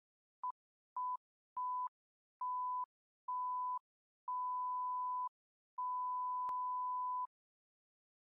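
Seven electronic beeps at one steady pitch, each longer than the last, the final one lasting about a second and a half. A sharp click falls in the middle of the final beep.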